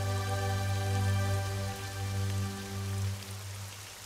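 Soft background music of sustained, held chords over a steady hiss, easing slightly near the end.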